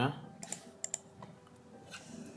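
A handful of short, sharp clicks from a computer keyboard and mouse, some coming in quick pairs.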